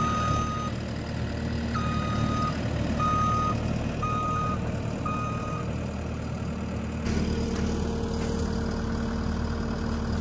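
New Holland C332 compact track loader's diesel engine running while its backup alarm sounds five short beeps about a second apart. The beeping stops about five and a half seconds in and the engine keeps running.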